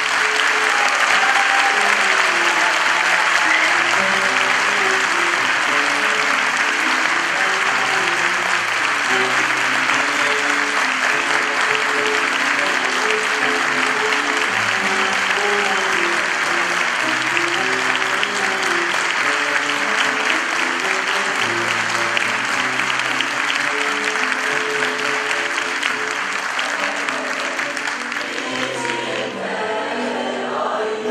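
Sustained audience applause over instrumental music playing a slow, stepping melody. The clapping dies away near the end.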